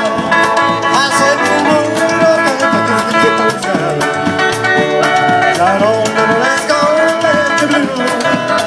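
A live band of guitar, bass guitar and drum kit playing with a steady drum beat, with a wavering melody line over the top.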